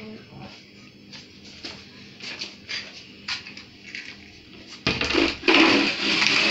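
A gas stove burner being lit: a few faint, irregular clicks from the knob and igniter, then a loud rustling handling noise near the end.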